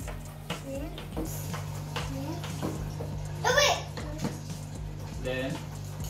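Young children's voices babbling and exclaiming in short calls, the loudest and highest about halfway through, over a steady low hum. A few light taps of packaging being handled come in between.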